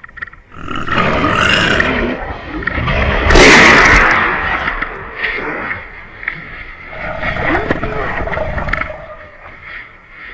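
Close-range commotion as a wild boar charges: loud, rough cries and scuffling, loudest about three and a half seconds in, with pitched cries returning near the end.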